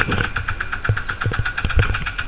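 Auto rickshaw's small engine running at idle with an uneven, knocking beat and irregular low thumps; it is the engine that keeps cutting out.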